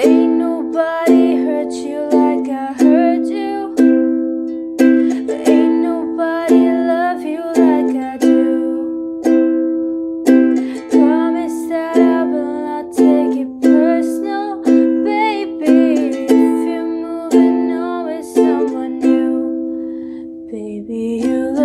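Ukulele strummed in a steady rhythm, each chord ringing and fading before the next, with a woman's voice carrying a wavering melody over it without clear words.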